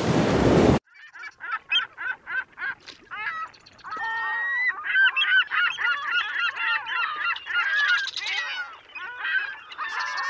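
A steady rushing noise stops abruptly under a second in, followed by a flock of birds calling: separate short calls at first, then many overlapping calls from about four seconds in.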